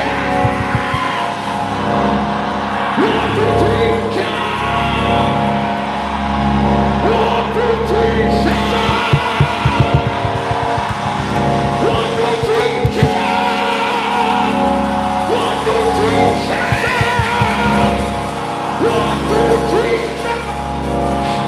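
Live church praise music played loudly, with sustained chords over bass and a brief run of drum-like hits near the middle. Many voices cry out and shout over it.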